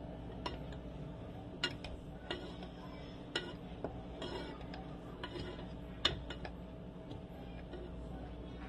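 A spoon stirring oatmeal porridge in a metal saucepan, giving faint, irregular taps and clinks against the side of the pot.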